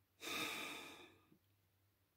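A woman's single audible breath close to the microphone, lasting about a second.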